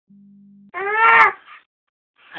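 A steady low hum for about half a second, then a single short, loud, high-pitched vocal cry that rises slightly and falls, with a faint trailing sound just after.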